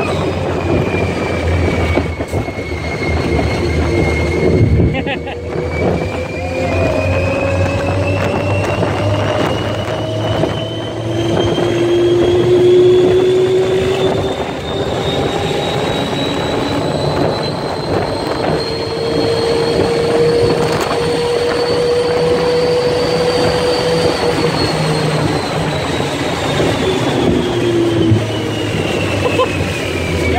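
Test Track ride vehicle speeding up the high-speed run to about 65 mph: a motor whine rises slowly in pitch for about twenty seconds and then falls in the last few seconds as the car slows, over wind rushing past the open car.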